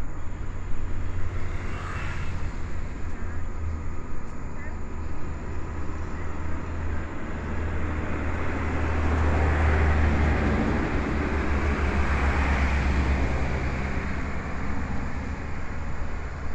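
A passing motor vehicle: a low rumble with a wider wash of noise that builds over several seconds, peaks about two-thirds of the way through, then eases off.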